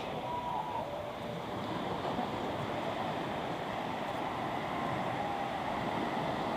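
Small waves washing onto a sandy beach, a steady even rush of surf.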